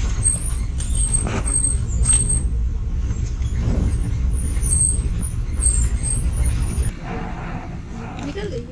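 Open safari jeep driving along a rough dirt track: a steady low engine and road rumble. It cuts off abruptly about a second before the end, leaving a quieter background.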